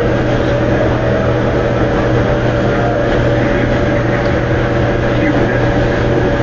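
A loud, steady mechanical drone with a constant low hum and a thin steady higher tone, unchanging throughout, like a running motor.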